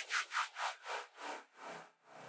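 A run of about seven short rubbing swishes, quick at first, then coming further apart and fading out. It is a winding-down sound effect rather than a steady pour.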